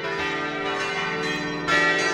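Church bells ringing, with long, ringing tones and another bell struck near the end.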